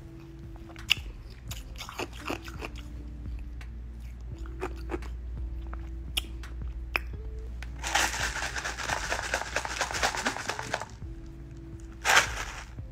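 A person chewing and crunching food close to a phone microphone, with scattered small clicks. About eight seconds in there is a louder stretch of dense crackling that lasts about three seconds.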